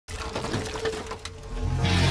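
Intro of a hard rock song: a crackling, noisy texture with a faint held tone, then a low swell building in the last half-second as the electric guitars come in.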